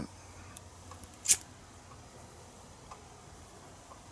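A pocket lighter struck once about a second in, a short sharp scrape-click, followed by only a few faint handling ticks.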